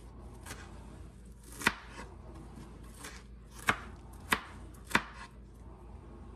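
Kitchen knife chopping broccoli on a plastic cutting board: a few sharp, separate knocks of the blade on the board, one about a second and a half in and three more close together in the last two seconds.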